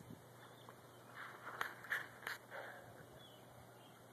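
Faint splashing of pool water as a child paddles and kicks, a few soft splashes between about one and two and a half seconds in.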